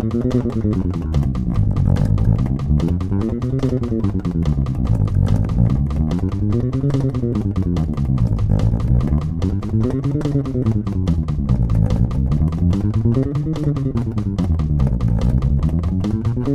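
Four-string Fender electric bass played fingerstyle in a fast chromatic exercise: eighth notes at 290 bpm, four notes per string, one finger per fret. The notes climb across the strings and back down, shifting up a fret each time, in even up-and-down sweeps about every three seconds, at roughly ten plucks a second.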